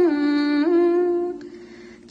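A woman's voice singing long held notes, gliding down from one note to the next, then fading away about one and a half seconds in.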